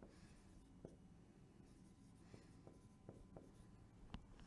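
Faint dry-erase marker strokes on a whiteboard: a scattering of light taps and ticks as words are written.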